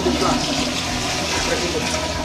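Commercial tankless toilet flushed by its exposed chrome flushometer valve: a loud, steady rush of water through the bowl.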